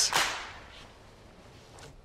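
A single short, sharp swish-slap right at the start, dying away within about half a second, followed by quiet.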